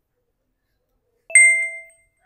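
A notification-bell 'ding' sound effect from a subscribe-button animation: a sharp click, then a single bright ringing chime about a second and a quarter in, fading out over about half a second.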